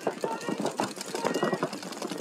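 Paintball markers firing in fast strings, a rapid rattle of shots, as the point breaks off.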